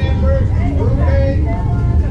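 Voices of people at a softball game talking and calling out, with no clear words, over a steady low rumble.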